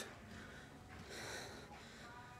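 A faint breath from the person holding the camera, a soft noisy exhale about a second in, over quiet room tone.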